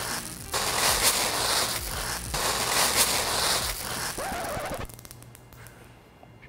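Granules of fire-extinguishing capsules (a liquid extinguishing agent held in orange capsules) poured onto a small paper fire, crackling and popping densely as they burst and scatter in the flames. The crackle dies away over the last second or two as the fire goes out.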